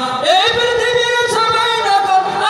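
A young man singing a Bengali Islamic gojol into a microphone, holding long, drawn-out notes; his voice slides up into a new note about a third of a second in.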